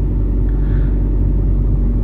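Car engine idling steadily, heard from inside the cabin as a continuous low rumble while the car warms up to thaw its iced windows.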